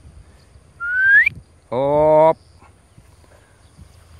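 A dog handler's short rising whistle, then about half a second later a man's single long, drawn-out call, both commands to a bird dog in training.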